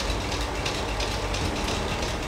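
Cashew cutting machinery running: a steady low mechanical hum with a faint, quick repeated clicking over it.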